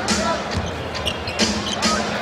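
Basketball dribbled on a hardwood court, a few sharp bounces over the steady noise of an arena crowd.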